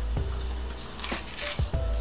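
Background music with a few soft held notes, and a few faint clicks.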